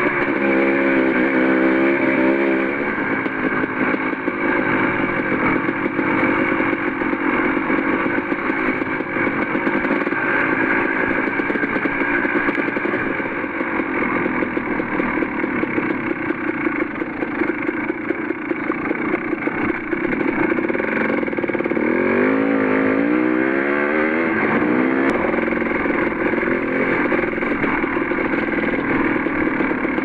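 Enduro dirt bike engine running at low speed, its revs rising and falling rapidly in the first few seconds and again about twenty seconds in.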